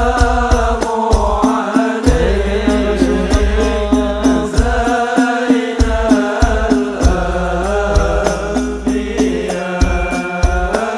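Male voices chanting an Islamic sholawat over a steady beat of hand percussion with a deep bass drum.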